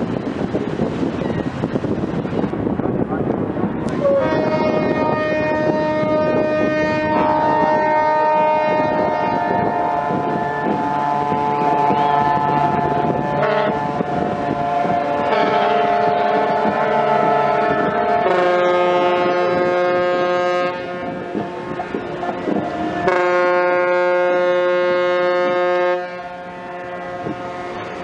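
Several ship and boat horns sounding together in long, overlapping blasts, a welcome salute to the arriving training ship. They come in about four seconds in and shift in pitch every few seconds as horns start and stop, after a few seconds of wind on the microphone.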